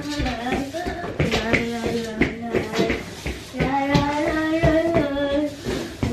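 Singing: a melody of held notes that step up and down, with a few light knocks scattered through it.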